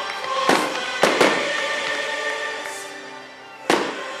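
Fireworks shells bursting in sharp bangs, about half a second in, twice around one second, and loudest near the end, over music played for the show.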